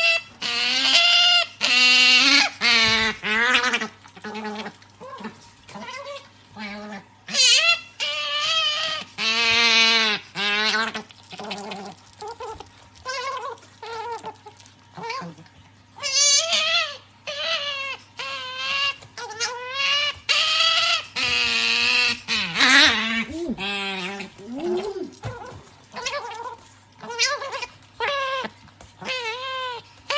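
Asian small-clawed otter squealing over and over, each call a wavering, quavering cry, in runs with short gaps between them.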